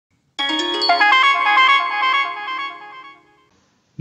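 A short electronic chime jingle: a quick run of bell-like notes that then rings on and fades out by about three seconds in.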